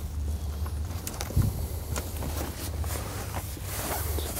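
Light handling noise as a metal pin is slid into a layout blind's door frame: a few faint clicks and a small thump about a second and a half in, with fabric rustling, over a steady low hum.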